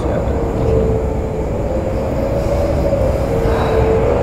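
Steady low mechanical rumble with a humming tone that dips slightly in pitch about three seconds in.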